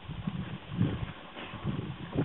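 Irregular soft steps on a muddy gravel farm track, a few a second, uneven in loudness.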